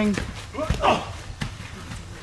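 A few dull thuds of wrestlers' bodies and feet on a backyard wrestling ring, with a short rough burst of noise about a second in.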